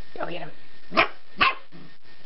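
A dog barking twice, two sharp barks about half a second apart.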